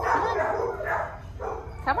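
Dogs in shelter kennels barking, a bark about every half second.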